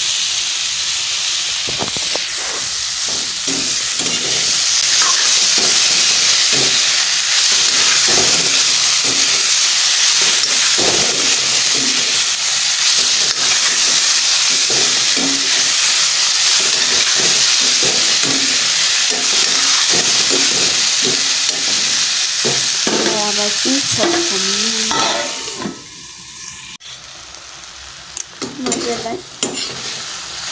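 Bitter gourd, potato and tomato sizzling in hot oil in a steel kadai, stirred with a steel spoon that scrapes and knocks against the pan. The sizzle cuts off sharply near the end, leaving quieter scraping and stirring.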